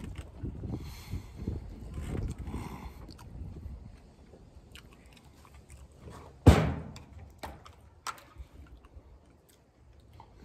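Close-miked chewing and mouth noises of a man eating a burger, with low wind rumble on the microphone. A sudden loud thump comes about six and a half seconds in, the loudest sound here, followed by a couple of light clicks.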